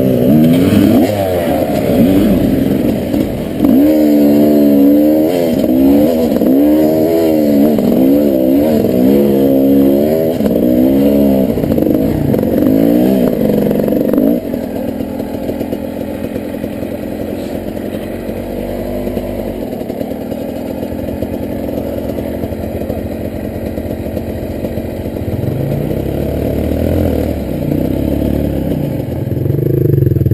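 Dirt bike engine revved and eased in repeated bursts of throttle over rough rocky ground. About halfway through it drops to a quieter, steadier idle, and the revs rise again near the end.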